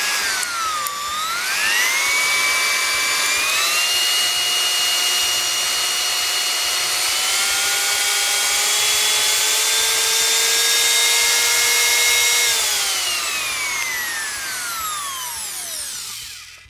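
Bosch POF 1400 ACE wood router's 1400 W electric motor running with a high whine. Its pitch dips briefly, then steps up several times as the speed wheel is turned to higher settings. It holds at the top speed, then falls steadily over the last few seconds.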